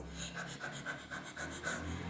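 A boy imitating the quick, shallow 'puppy breathing' (respiração de cachorrinho) of a woman in labour: rapid panting breaths, about six a second.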